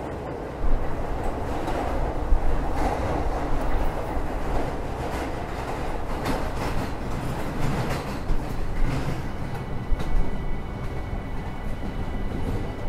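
Freight train rolling along the track, a heavy rumble with the clatter and knocking of its wheels and cars, growing louder about half a second in.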